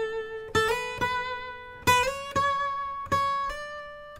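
Steel-string acoustic guitar picked one note at a time, about six notes in a slow line that climbs through the A major scale, each note left to ring.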